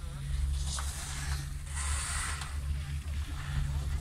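Riding a chairlift: a steady low rumble with wind on the microphone, and a few brief hissing gusts.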